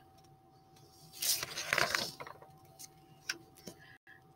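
A page of a large picture book being turned: a paper rustle about a second in, lasting about a second, followed by a few light clicks as the book is handled.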